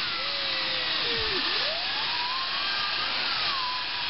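Electric rotary polisher with a buffing pad running against a plastic headlight lens, buffing the cloudy lens with polishing compound. Its motor whine dips sharply about a second in and climbs back to a steady pitch.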